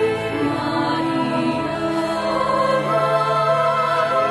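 Sacred choral music: voices holding long sustained notes, with a high voice singing with vibrato entering about three seconds in.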